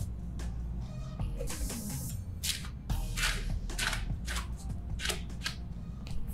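Boar-and-nylon bristle hairbrush drawn through wet hair in repeated swishing strokes, about two a second, while tangles are brushed out.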